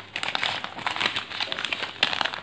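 A sheet of ruled notebook paper being folded and creased by hand, crinkling in a quick, irregular string of crackles.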